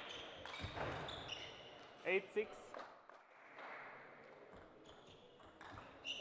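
A celluloid-type table tennis ball knocking off bats and table as a rally ends, then a player's short, loud shout about two seconds in.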